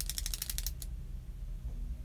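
Ratchet clicks from the twist base of a powder brush dispenser as it is turned to feed loose powder into the bristles: a rapid run of about a dozen clicks that stops under a second in.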